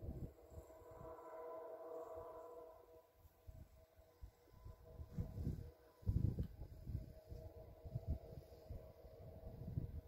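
Faint, irregular gusts of wind buffeting the microphone, over a faint steady hum.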